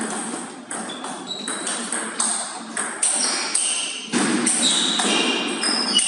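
Table tennis rally: the plastic ball clicking off paddles and the table in quick, irregular strikes, joined by ball hits from a neighbouring table. It gets louder and busier from about four seconds in.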